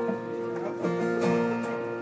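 Taylor acoustic guitar strummed in a steady rhythm, a fresh strum about every third of a second, with the chords ringing between strokes.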